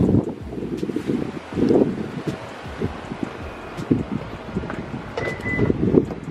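Wind buffeting the handheld camera's microphone, with rustling and handling noise; near the end a car door is opened.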